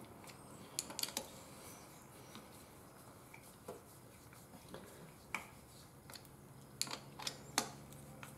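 Light metal clicks of a small wrench being fitted and turned on a screw of a hydraulic floor jack's pump: a few quick clicks about a second in, single clicks spaced through the middle, and three close together near the end.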